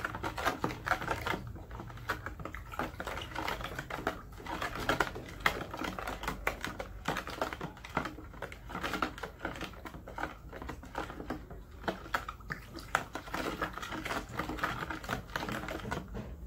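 A spoon stirring blended ginger, rice and sugar in a small plastic bucket: a continuous run of quick, irregular clicks and scrapes against the bucket.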